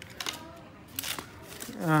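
Carbon fishing rod sections being handled and moved, giving soft rubbing and a few light clicks and ticks in the first half.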